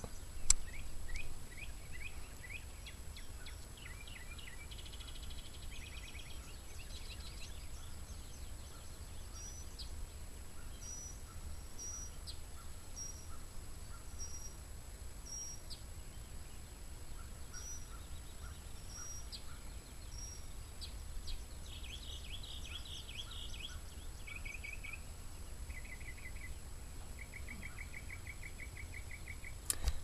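Several songbirds chirping, whistling and trilling outdoors, including repeated rapid trills near the end, over a steady low rumble. A single sharp click sounds about half a second in.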